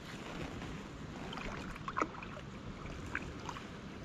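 Steady wind and water noise around a kayak sitting on a lake. There is a sharp tap about two seconds in and a fainter one about a second later.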